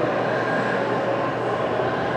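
Steady, even rumbling noise with no distinct knocks or changes.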